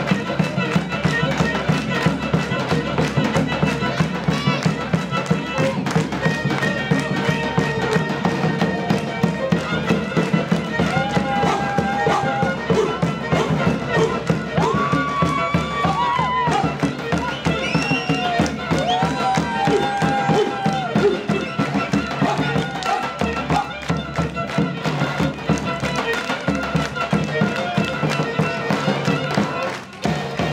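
Live Turkish Black Sea folk dance music: a davul bass drum beating a steady rapid rhythm under the reedy, bowed melody of a Black Sea kemençe.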